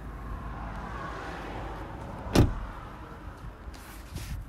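A Skoda Citigo's door being shut: one solid thump about two and a half seconds in, after a steady low noise.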